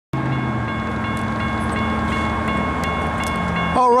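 Railroad crossing warning bell ringing steadily as the crossing signals activate, a high ringing tone with a lower steady drone beneath it.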